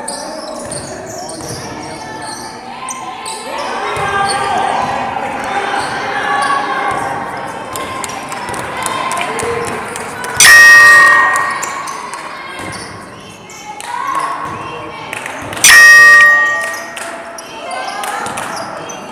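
Basketball game sounds in a large gym: a ball bouncing and players' voices. Twice, about ten and sixteen seconds in, a loud electronic tone sounds suddenly, holds for about a second and fades.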